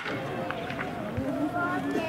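A single sharp crack at the very start, a baseball bat hitting the ball, followed by people's voices across the field.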